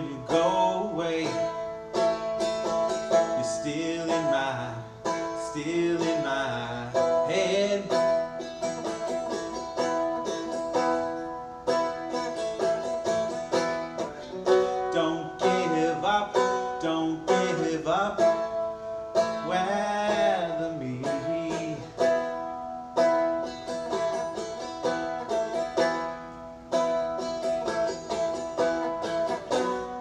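Seagull Merlin, a four-string fretted dulcimer-style instrument, strummed in a steady rhythm with a twangy, banjo-like tone and a droning note held under the chords. A voice comes in twice over the strumming, a few seconds in and again around two-thirds of the way through.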